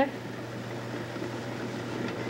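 Steady low hum with hiss from an old, worn broadcast soundtrack during a pause in talk. There is no distinct sound event.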